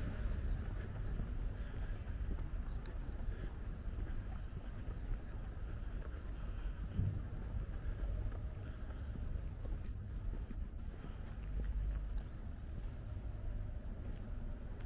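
Steady low rumble of outdoor background noise, with wind buffeting the microphone.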